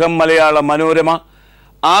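A man speaking Malayalam in a steady monologue, with a brief pause a little past the middle.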